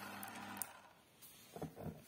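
Small AC motor running with a steady low electrical hum. About half a second in, a click comes as its power is disconnected, and the hum stops.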